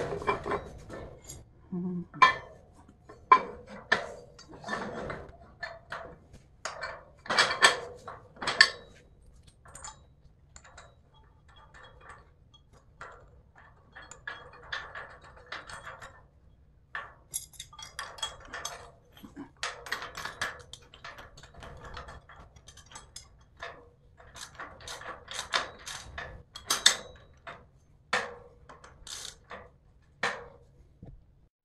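Steel hardware clinking and knocking as a bolt, washers and nut are fitted to a steel folding hitch cargo rack and tightened with hand tools: irregular metal clicks and clanks with short scraping stretches.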